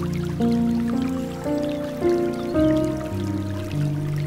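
Slow, soft relaxing piano music, one sustained note or chord giving way to the next every half second to a second, over a bamboo water fountain's trickling and dripping.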